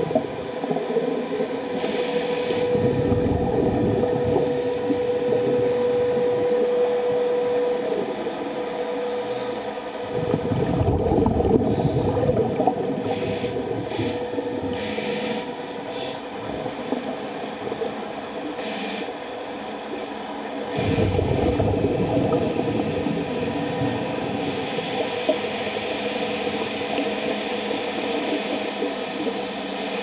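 Underwater sound of a small ROV's electric thrusters running: a steady motor whine over a churning water hiss, with a few surges of low rumbling as the thrusters push harder.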